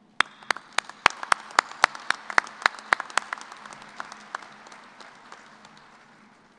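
Audience applause, with loud sharp claps close by, about four a second, standing out over it for the first three seconds. The applause then dies away toward the end.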